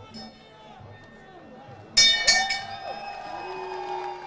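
Boxing-ring bell struck three times in quick succession about two seconds in, its ringing tone lingering, signalling the end of the bout, which was stopped by technical knockout. The arena crowd is shouting and cheering throughout.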